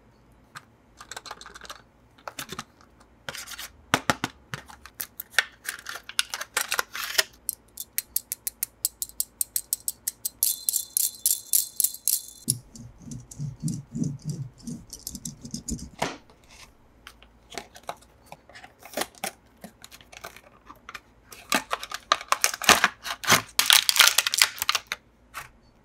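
Hands opening toy packaging: a run of sharp clicks and crackles. About halfway through comes a short dense rasping stretch, then a few seconds of soft low thuds, and the clicking picks up again near the end.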